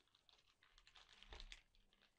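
Faint crinkling and ticking of plastic accessory bags being handled, busiest about a second and a half in, with a soft thump there.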